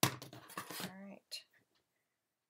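A woman's voice for about the first second, words too unclear to make out. It is followed by a couple of light taps on the cutting mat as the rotary cutter and acrylic ruler are set down.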